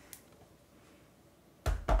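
Near silence, then about one and a half seconds in, a few loud hard knocks as the die-cutting machine and its clear plastic cutting plates are handled and set down on the desk.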